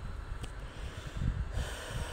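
A man's breath, a noisy exhale near the end, over a low irregular rumble of handling noise on a handheld phone's microphone.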